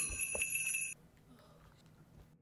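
Jingle bells shaken in a quick steady rhythm, the last bars of the song's accompaniment, cut off suddenly about a second in, leaving faint room tone.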